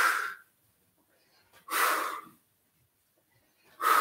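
A man's forceful breaths out through the mouth, three of them about two seconds apart with silence between, the effort breathing of an abdominal exercise.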